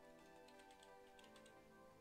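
Near silence, with a few faint short clicks in the first half and faint steady background music throughout.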